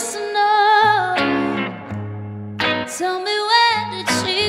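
A woman sings a slow melody with vibrato over electric guitars. The guitars strike a few chords, roughly one every second or so.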